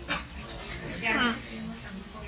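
A dog whimpering once: a short, high whine that falls in pitch about a second in.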